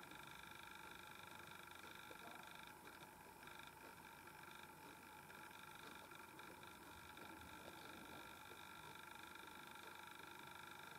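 Near silence: faint room tone with a steady high electronic whine made of several pitches.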